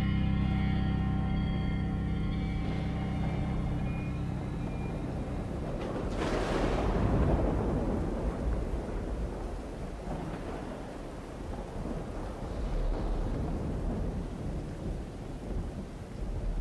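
Eerie music with long held tones fades away over the first few seconds. About six seconds in, a clap of thunder breaks and rolls on as a long rumble over the steady hiss of rain.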